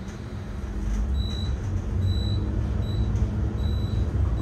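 A high-speed traction elevator cab descending at about 700 feet per minute, with a low rumble and rush that grows about a second in as the car picks up speed, then holds steady. Faint short high beeps repeat somewhat less than a second apart.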